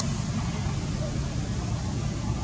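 Steady low background noise, even in level throughout, with no distinct sounds standing out.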